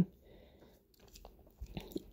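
A quiet pause in a woman's voice-over, with faint mouth clicks and a soft intake of breath close to the microphone just before she speaks again.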